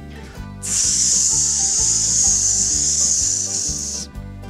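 A person hissing a long "sssss" in imitation of a snake, starting about half a second in and held for about three seconds, over light background music.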